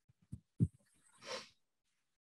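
Two soft thumps, then a short breath-like rush of noise about a second and a quarter in.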